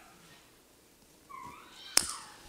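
A brief high-pitched cry whose pitch rises and then falls, past the middle, followed by a single sharp click at the very end.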